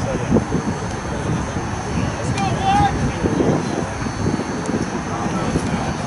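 Indistinct voices of players calling and talking across an outdoor rugby pitch, over a steady low rumble.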